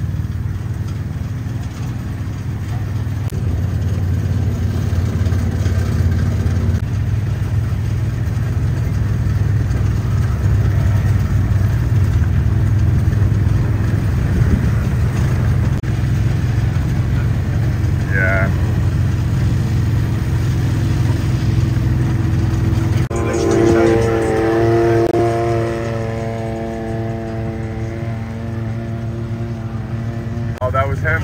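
Golf cart running at a steady pace over grass and dirt, a continuous low drone. A louder pitched sound rises over it for a couple of seconds about three quarters of the way through.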